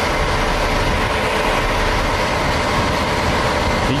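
Loud, steady motor-vehicle noise: an engine running close by with a faint even hum under a hiss.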